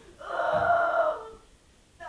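A man's wordless vocal cry, drawn out for about a second.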